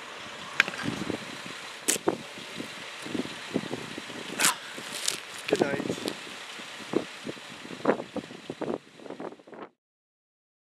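Steady outdoor background hiss with scattered short scuffs and knocks and a few brief wordless voice sounds, all cutting off just before the end.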